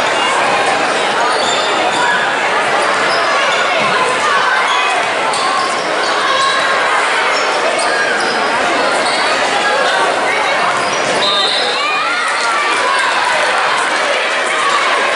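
Basketball dribbling on a hardwood gym floor amid a steady din of spectators' and players' voices, echoing in a large gym.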